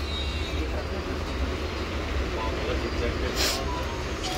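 Steady low hum and rumble of background noise, with a brief hiss about three and a half seconds in.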